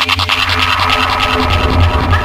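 Vixa-style electronic dance music at a build-up in a DJ mix: a fast rolling beat blurs into a dense noisy swell with a held tone.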